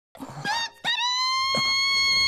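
A woman's high-pitched scream, one long held cry that rises slightly, after a short cry just before it, from a character falling toward a crash.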